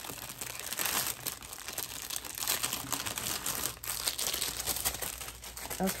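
Plastic packaging crinkling and rustling as it is handled, a continuous run of small crackles.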